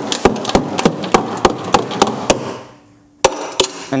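Small hammer tapping quickly along the rusted steel sill of a Citroën Picasso, about three strikes a second, with a short pause just before the end: probing how far the rot has spread through the sill.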